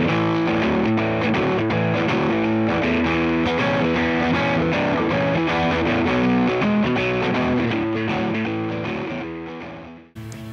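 Electric guitar played through a Fender Santa Ana Overdrive pedal: a distorted, overdriven riff that fades out over the last couple of seconds.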